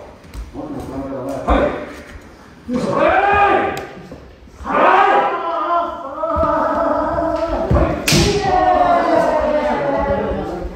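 Kendo practitioners' kiai shouts, several long drawn-out yells, mixed with shinai strikes and stamping feet on the wooden dojo floor; a sharp crack about eight seconds in is the loudest hit.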